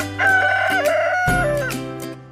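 A barred rooster crowing once, a single call lasting about a second and a half, over background music.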